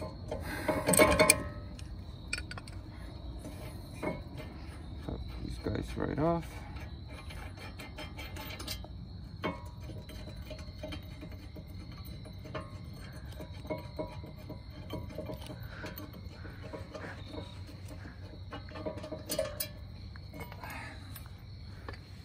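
Clinks and scrapes of a steel wrench and a brake caliper bracket being handled and worked off the rotor, louder about a second in, then faint and sparse.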